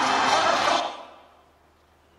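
Soundtrack of a short Super Bowl video clip, music with voices, played back and stopping about a second in, followed by near silence.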